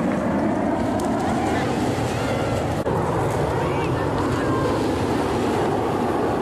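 Steady loud roar of the Red Arrows' BAE Hawk T1 jets in a flying display, with a brief break about three seconds in.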